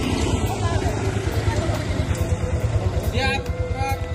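Motorcycle engines running at low road speed close by, a rapid low pulsing under a rush of wind noise. A voice calls out briefly about three seconds in.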